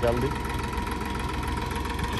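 Sonalika 740 tractor's diesel engine idling steadily with a regular low beat while it stands hitched to a loaded trolley.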